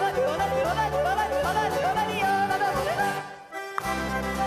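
Fast tongue-twister yodeling over a band accompaniment, the voice leaping rapidly up and down in pitch. A little after three seconds in the music breaks off briefly before the accompaniment comes back in.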